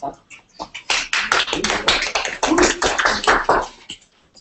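Small audience applauding: dense, irregular clapping that starts about a second in and dies away just before the end.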